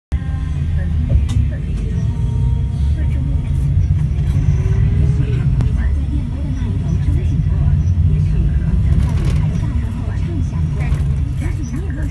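Steady low rumble of a moving bus heard from inside the cabin, with indistinct voices over it.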